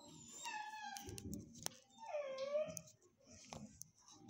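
A dog whining twice: a short falling whine about half a second in, then a longer whine that dips and rises again about two seconds in, with a sharp click between them.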